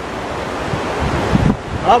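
Wind blowing across the microphone: a steady rushing noise with an uneven low rumble, until a man's voice starts near the end.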